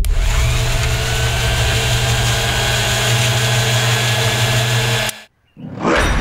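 A small electric motor appliance running at a steady speed with a loud whirring hiss. It starts suddenly and cuts off abruptly about five seconds in.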